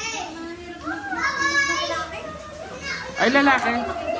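A small child's high-pitched voice and people talking, with no other distinct sound.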